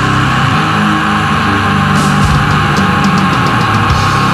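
Heavy metal band recording: distorted electric guitars over bass and drums, loud and dense, with cymbal strokes coming in about halfway through.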